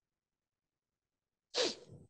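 Silence, then about one and a half seconds in a person sneezes once: a short, sharp, breathy burst that quickly fades.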